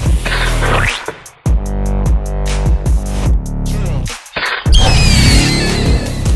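Electronic dance music with a heavy bass line and sweeping synth sounds, in a dubstep style, briefly dropping out just after a second in.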